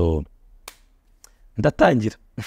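A man speaking, then pausing for over a second, with a single sharp click in the pause and a fainter one after it, before he speaks again.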